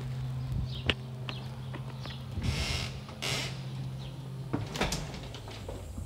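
Door-handling noises: a sharp click about a second in, two brief rushing noises around the middle, and a few sharp clicks near the end. Under them runs a steady low hum that stops a little before the end.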